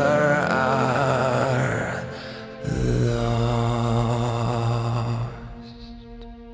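Male voice singing a long held note with vibrato over a low sustained accompaniment, ending about two seconds in; a low steady chord then swells in and fades away near the end.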